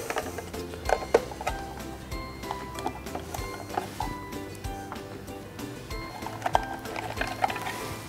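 Soft background music with held notes, over a few light plastic clicks as the removable accessory storage compartment is taken off the sewing machine's free arm and handled.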